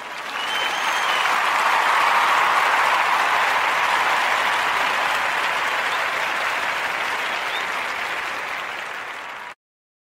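Crowd applause and cheering from a recorded clip, swelling over the first two seconds, slowly fading, then cut off abruptly near the end. A faint short whistle is heard about a second in.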